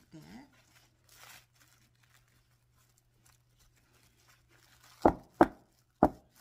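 Plastic cling wrap crinkling softly as a wrapped clay slab is pressed into a soap dish mold, then two loud thumps about half a second apart near the end.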